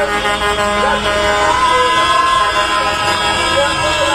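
Vehicle horns honking in long, steady blasts, with a deep horn tone that stops about a second in, over voices shouting.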